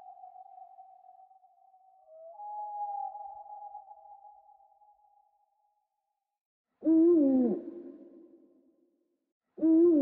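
Owl hooting: two loud calls about three seconds apart in the second half, each falling in pitch and trailing off in an echo. Before them, a fainter steady tone fades out by about the middle.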